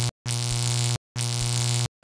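Alarm-buzzer sound effect: a low, harsh electric buzz at one steady pitch, sounding on and off. One buzz cuts off just after the start, then two more follow, each about three-quarters of a second long, with short silent gaps between them.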